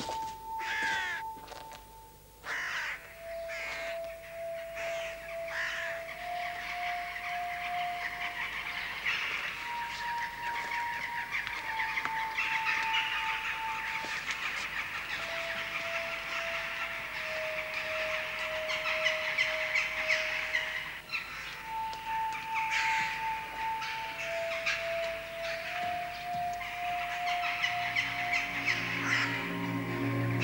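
Crows cawing over background music: a slow melody of long held notes that step between a few pitches, with deeper notes coming in near the end.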